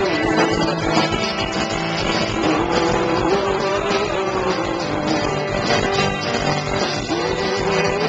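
Live rock band playing a song at full volume: strummed acoustic guitar and electric guitars over a drum kit.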